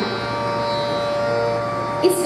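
Harmonium holding steady notes in a pause between sung phrases of a Hindustani classical vocal performance, with a further note joining briefly past the middle.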